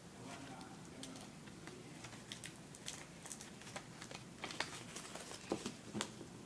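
Folded paper plane being handled and pressed: faint paper crinkles and small taps, growing more frequent about two seconds in, with a few sharper clicks near the end.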